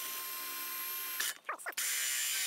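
Power drill with a hole-saw bit running as it cuts a drainage hole through the base of a lightweight styrofoam-coated fiberglass planter. It gives a steady whir that stops briefly a little past halfway, then starts again.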